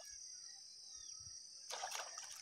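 Faint evening pond-side ambience: a steady high-pitched insect trill, with one faint high whistle falling in pitch about half a second in, typical of a bird call. A brief soft noise comes near the end.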